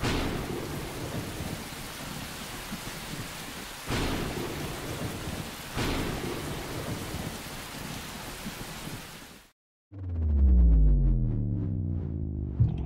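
Steady rainfall with rolls of thunder, swelling twice in the middle, then cutting out. About ten seconds in, a deep droning synth tone with a sinking sweep takes over.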